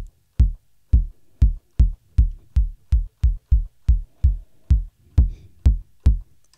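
Behringer Pro-1 analog synthesizer playing a synthesized kick drum over and over: short low thumps, each starting with a click and falling quickly in pitch, about two to three a second at uneven spacing. The envelope is being shortened while it plays.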